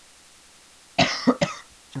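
A man coughing twice in quick succession about a second in, after a moment of quiet room tone.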